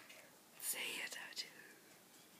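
A person whispering for just under a second, starting about half a second in.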